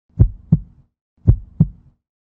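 Heartbeat sound effect: two deep lub-dub double beats about a second apart, each pair trailing off in a short low hum.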